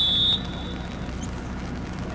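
A referee's whistle gives one short, steady blast right at the start, about a third of a second long, with a brief trailing tail, over a low steady background rumble.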